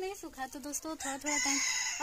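A rooster crowing, loudest in the second half.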